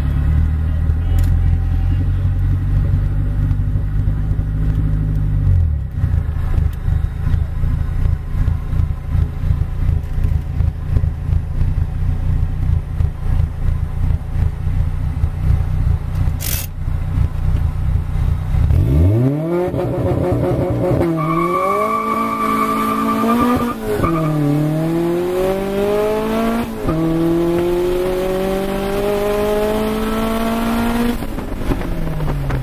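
Turbocharged Honda Prelude's engine heard from inside the cabin, running low with a rhythmic pulse while staged at the start line. About two-thirds in it launches hard: the revs climb steeply, dip at each gear change and climb again.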